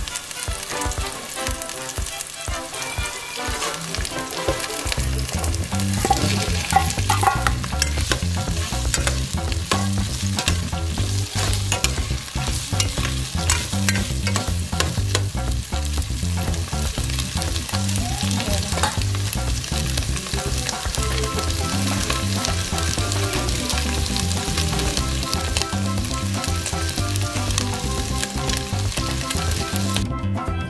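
Garlic and onion frying in oil in an enamel pot, with chopped pre-cooked beef stirred in: a steady sizzle, louder from about six seconds in, and a metal spoon clicking and scraping against the pot.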